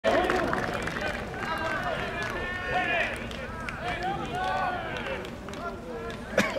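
Spectators' voices in a ballpark crowd: several people talking and calling out over one another.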